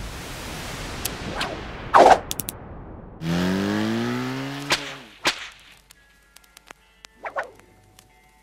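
Animated logo intro sound effects: a swoosh and a sharp hit followed by quick clicks, then a pitched tone rising over about two seconds. Two sharp clicks follow, then faint held musical tones and a short swoosh near the end.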